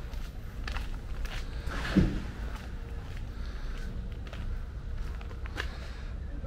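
Footsteps of a person walking, with a louder thump about two seconds in, over a steady low rumble.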